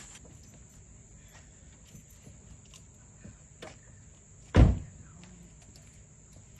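A single heavy thump of a car panel slamming shut, about four and a half seconds in, after a stretch of faint clicks and ticks.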